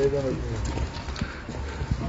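A few sharp knocks of an axe striking firewood logs on a chopping block, with a brief bit of a man's voice at the start.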